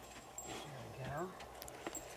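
A person's voice briefly telling a dog to "get out", with a few faint clicks and knocks.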